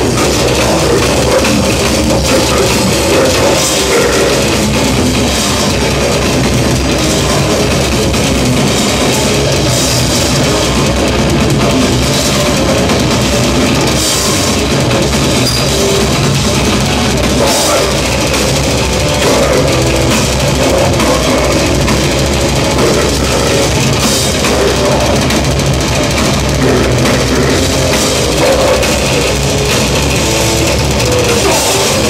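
Death metal band playing live, heard from the audience: distorted guitars, bass and drums, loud and unbroken, with several cymbal crashes cutting through.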